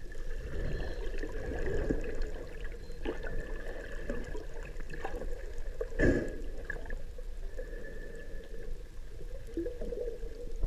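Underwater ambience picked up by a submerged camera: a steady, muffled rumble of water with a faint constant tone through it, a few small clicks, and one brief louder rush about six seconds in.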